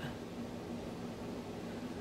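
Steady low hiss with a faint low hum: quiet room tone.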